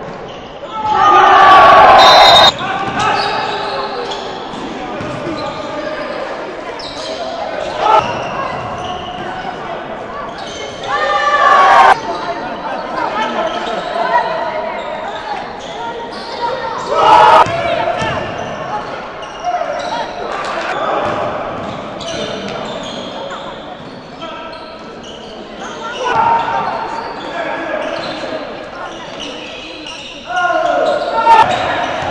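Basketball game in an echoing sports hall: the ball bouncing on the court and players' voices calling out, with loud shouts about a second in, around twelve seconds in and around seventeen seconds in.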